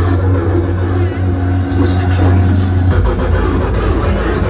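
Tractor's diesel engine running steadily as it tows a lit parade float past, a deep hum that drops in pitch about three seconds in.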